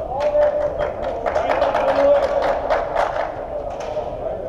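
Sounds of an indoor small-sided football game: a quick, irregular run of sharp knocks and taps, with players' voices calling over them.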